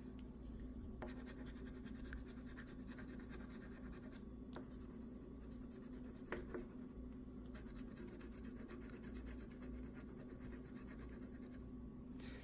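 Faint, rapid scratching as the latex coating is scraped off a scratch-off lottery ticket, with a few light clicks.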